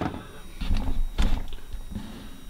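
A few soft knocks and handling noise over a low rumble.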